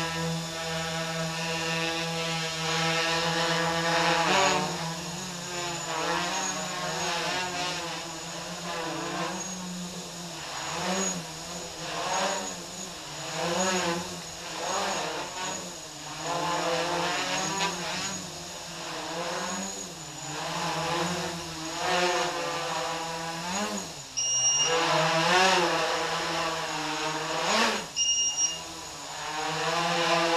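Quadcopter's four brushless motors (MS2208) and 8-inch props running in hover with the battery running low: a steady buzzing whine at first, then repeatedly rising and falling in pitch every second or two as the controller and throttle correct it. Two short beeps sound near the end.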